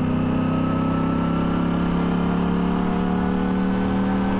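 Sport motorcycle engine running steadily while cruising in highway traffic, its pitch easing down slightly, over a steady hiss of wind and road noise.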